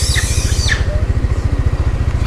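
Motorbike engine idling with a steady, rapid low beat. A few high chirps sound over it in the first second.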